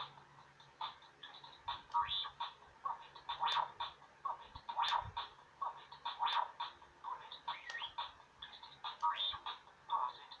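Star Wars R2-D2 Bop It toy giving a quick, irregular run of short electronic R2-D2 beeps and warbling chirps during its Pass It game. A few sharp plastic clicks come from the toy being worked by hand.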